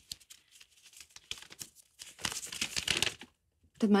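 Rustling and crinkling of clothes being handled, in a run of short strokes that is loudest about two seconds in.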